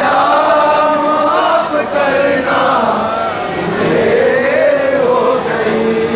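A crowd of men chanting loudly together in long held, rising and falling lines: a Shia mourning chant (latmiya/noha) of the kind sung at Arbaeen.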